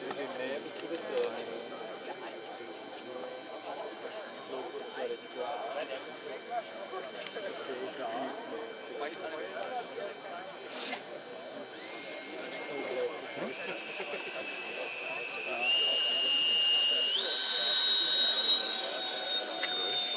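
Whine of an RC jet's 90 mm electric ducted fan, faint at first, then from about twelve seconds in rising in pitch in three or four distinct steps and getting louder as the throttle is opened. Crowd chatter runs underneath.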